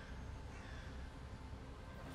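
Faint outdoor ambience: a low steady rumble with a few faint, distant bird calls.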